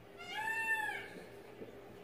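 A single short meow-like call, a little under a second long, rising and then falling in pitch.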